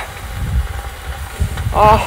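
Beef steak faintly sizzling on a slotted grill plate over a portable gas stove, under an uneven low rumble of wind buffeting the microphone. A short vocal sound near the end.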